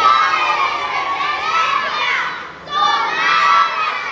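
Many children's voices shouting together in two long loud stretches, broken by a short pause about two and a half seconds in.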